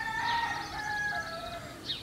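A rooster crowing once: one drawn-out call that drops in pitch near its end.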